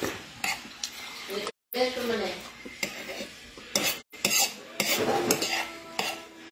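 Cutlery clinking and scraping against a plate of rice while eating, in scattered sharp clicks. The audio drops out completely for a moment twice.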